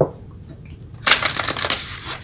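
A deck of cards being shuffled by hand: a brief tap at the start, then a quick run of flicking card edges from about a second in.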